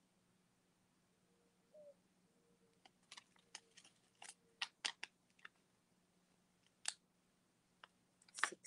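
Short, crisp crackles and clicks of paper and packaging being handled: about ten in quick succession starting about three seconds in, then one more near the end, over a faint steady hum.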